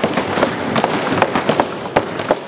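Applause from a seated audience: a dense, steady run of irregular sharp claps.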